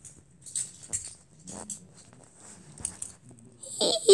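Scattered soft clicks and rustling from handling a phone and toys low over carpet.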